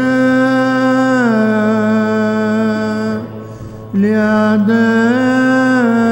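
A single voice chanting liturgical Orthodox chant in long held notes, stepping down in pitch about a second in, breaking off for a moment around three seconds in, then resuming with a small rise and fall. A steady low drone sounds underneath the whole time.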